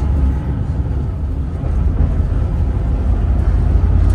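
City bus running, heard from inside the passenger cabin as a steady low rumble.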